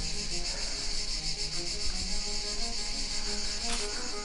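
A steady, high, fast-pulsing insect chorus of summer garden ambience over quiet background music with sparse, soft melodic notes.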